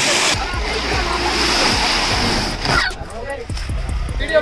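Water splashing and churning hard in a concrete tank, a loud, dense spray lasting about three seconds before cutting off.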